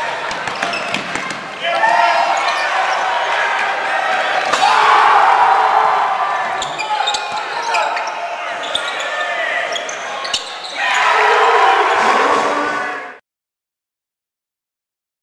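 Crowd voices filling a gymnasium during a basketball game, swelling louder a few times, with a basketball bouncing on the hardwood floor. The sound cuts off suddenly near the end.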